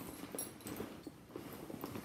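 Faint rustling and a few light, scattered ticks as things are moved about inside a fabric handbag.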